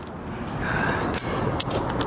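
Steady outdoor traffic noise from a nearby road, with a few light clicks in the second half.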